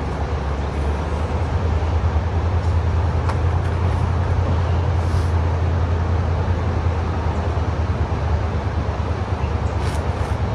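Steady low rumble under an even hiss of outdoor background noise, with no distinct events.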